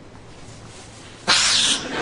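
A man's loud, short sniff of about half a second, coming just past halfway, as he smells a woman's breath close to her face.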